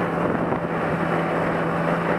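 Motorcycle engine running at a steady speed while riding, with wind noise on the action camera's built-in microphone.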